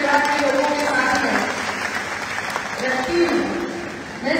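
Audience clapping, a dense patter of many hands that is most exposed in the middle, with a woman's voice over the microphone at the start and again briefly near the end.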